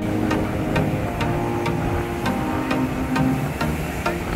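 Background music with a steady beat, about two beats a second, under sustained melodic tones.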